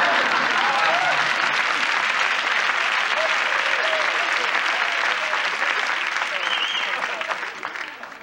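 Studio audience applauding, with laughter and a few voices calling out over the clapping; the applause dies down near the end.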